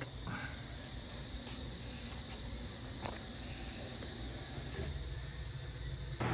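Steady faint outdoor background noise, an even hiss with no clear pattern, with a single faint click about three seconds in.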